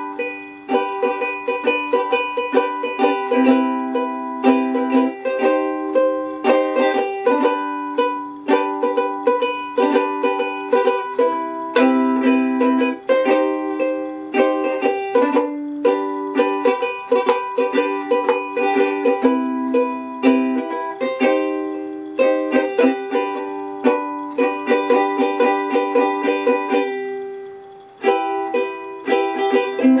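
Ukulele strummed in a steady rhythm, its chords changing every second or two, with a short break a couple of seconds before the end before the strumming picks up again.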